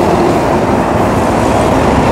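Steady, loud noise of passing road traffic.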